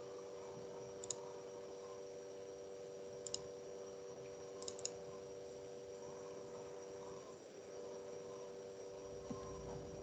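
A few faint, sharp computer mouse clicks: single clicks spaced a second or two apart, then a quick double click about five seconds in, over a steady low hum.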